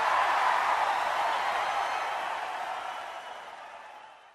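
A hissing wash of noise at the tail of the sung outro jingle, fading out gradually over the few seconds until it is gone.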